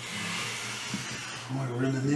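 A steady hiss of air or spray that starts suddenly and cuts off after about a second and a half, over background music; a voice comes in near the end.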